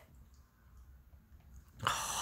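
Quiet room tone with a faint low hum. Near the end a short hissy noise comes in just before talk resumes.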